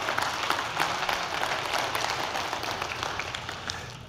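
A congregation applauding, a dense patter of many hands clapping that gradually dies away.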